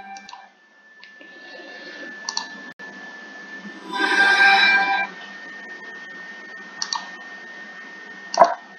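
Room hiss with a faint, steady high whine and a few soft clicks. About four seconds in comes a brief, louder musical sting from a video's logo intro played through speakers.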